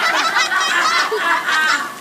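Children shrieking and squealing with laughter in a rapid run of high, wavering cries, as the fountain spews water over them.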